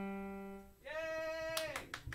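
The last note of a child's keyboard performance rings and fades out. A brief held high note follows, and sharp hand claps start near the end.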